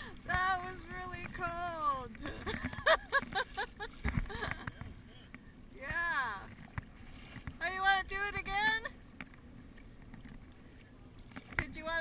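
Voices of paddlers calling and talking across the river in several short bursts, not close enough to make out, over a steady wash of moving water and wind against the kayak.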